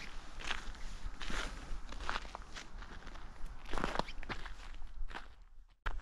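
Footsteps of a person walking on a forest path of dead leaves and thin snow, a step roughly every half second to second, over a steady low rumble. A sharp knock comes just before the end.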